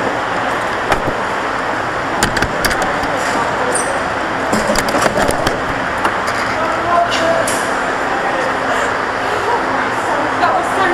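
Steady background din in a kart garage with indistinct voices, and several sharp knocks and clicks close to the kart's camera as the driver climbs out of the kart.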